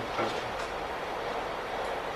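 Steady background hiss of room tone, with a faint trace of a voice just after the start.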